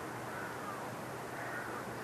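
Low, steady background hiss with faint bird calls in the distance.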